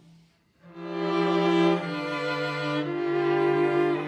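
String quartet of cello, viola and two violins bowing slow, sustained chords; the sound drops out briefly at the start, and the next chord enters about two-thirds of a second in, with the notes shifting every second or so. Each note's pitch is set by one region's average temperature for that year: the cello for the equatorial zone, the viola for the mid-latitudes, the violins for the high latitudes and the Arctic.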